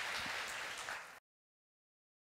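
Audience applauding, cut off abruptly just over a second in.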